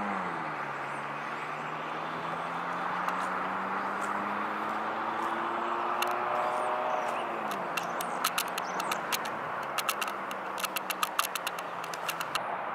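Road traffic going by: a steady rush of tyre and engine noise, with an engine note dropping in pitch as a vehicle passes right at the start, then another slowly rising. A run of sharp clicks comes in the last few seconds.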